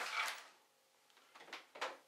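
Hand rummaging in a nylon 5.11 Rush 12 backpack, the fabric and packed gear rustling and scuffing: a short rustle at the start, then two brief scuffs a little after the middle.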